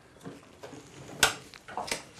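Walk-behind push lawn mower being tipped back onto its rear wheels on a tabletop: faint handling rattles, a sharp knock about a second in and a lighter click near the end.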